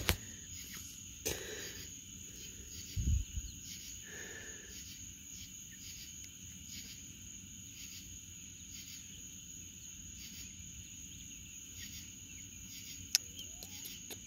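A faint, steady chorus of night insects, high-pitched and trilling without a break. A few soft knocks and a short high note about four seconds in sound over it.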